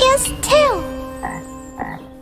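Cartoon frog croaking sound effects, one swooping croak followed by two short ones, over held notes of a children's song's backing music.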